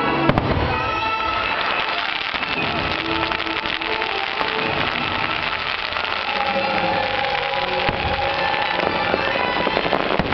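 Fireworks bursting over the show's music: one sharp bang just after the start, then a dense, continuous crackle of many small pops from crackling shells and fountains.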